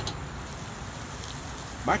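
Meat sizzling on a gas grill's grates as the lid is raised: a steady hiss, with a light click right at the start.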